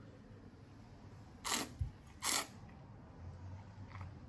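A man tasting wine with two short airy breaths through the mouth about a second apart, then a faint low hum near the end.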